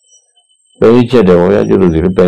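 A man's voice delivering a Buddhist sermon, starting again about a second in after a brief pause.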